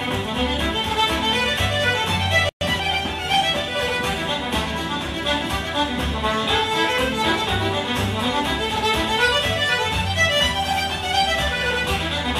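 Irish traditional dance tune played at a brisk pace, the fiddle leading with button accordion and guitar accompaniment. The sound drops out completely for a split second about two and a half seconds in.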